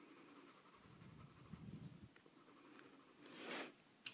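Faint scratching of a Crayola coloured pencil shading on paper, barely above room tone. About three and a half seconds in there is a brief, louder rustle.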